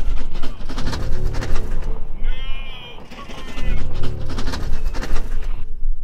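A man's wavering, anguished cry about two seconds in, over loud background music.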